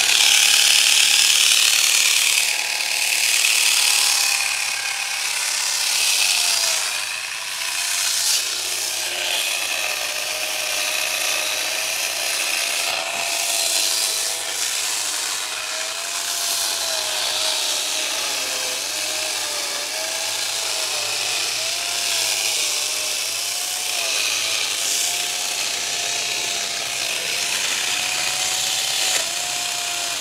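Small cordless chainsaw running continuously as it cuts into a thick bonsai branch, its motor pitch wavering and dipping as the chain bites into the wood.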